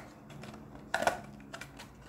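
Clear plastic packaging of a Scentsy wax bar crackling and clicking as it is handled and pulled open: a few sharp clicks, the loudest about a second in.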